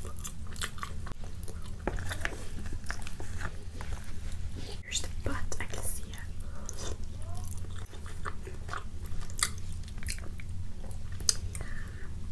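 Close-miked eating of rotisserie chicken: chewing with many wet lip smacks and mouth clicks, over a steady low hum.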